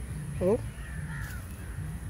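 A person's voice saying a short phrase with rising, question-like pitch about half a second in, over a steady low background rumble. A faint falling whistle-like tone sounds midway.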